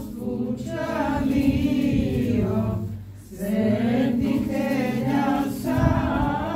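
A small group of voices singing an Orthodox church chant together in long held phrases, with a short breath pause about halfway through.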